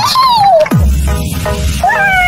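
Edited-in comedic sound effects over music: a high squeal that rises then falls, then a sudden steep downward swoop into a deep bass hum under short musical chords.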